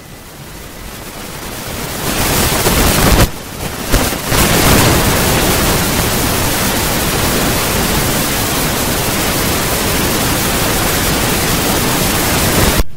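Loud, steady hiss of static-like noise, swelling over the first two seconds, dipping briefly about three seconds in, then holding level until it cuts off near the end.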